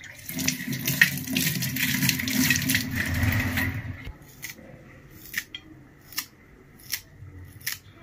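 Tap water running over hands and fresh herbs into a stainless steel sink for about four seconds, then stopping. This is followed by a few sharp clicks, about one a second.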